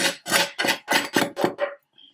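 A knife blade scraping and tapping on a wooden chopping board in quick strokes, about four or five a second, as seasoning is pushed off the board. The strokes stop shortly before the end.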